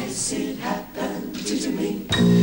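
Mixed jazz choir of men and women singing a short unaccompanied passage, without the low accompaniment, with a sharp sung 's' just after the start.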